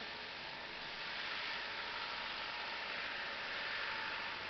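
Minibus passing close by, a steady noise of its engine and tyres that grows slightly louder as it comes alongside.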